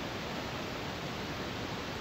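Steady hiss of room noise with no distinct clicks or knocks; the press of the power bank's button is not heard.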